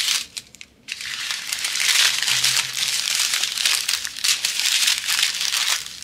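Plastic packaging crinkling as a strip of small plastic bags of diamond-painting drills and a cellophane-wrapped canvas are handled. After a short lull, a dense crackly rustle starts about a second in and keeps up until just before the end.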